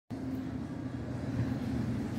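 Steady low outdoor background rumble with a faint hum running through it.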